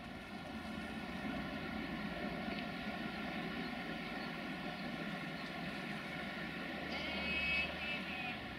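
Steady mechanical running of an approaching train, a drone with several held tones. A brief high-pitched tone comes near the end.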